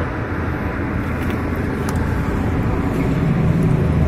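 Tractor engine running steadily, a low rumble that grows slightly louder toward the end.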